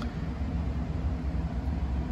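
Steady low rumble of indoor background noise, with a single sharp click right at the start.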